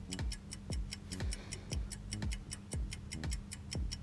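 Countdown-timer sound effect: rapid, even clock-like ticking over a beat of low thumps about twice a second, with a steady low hum underneath.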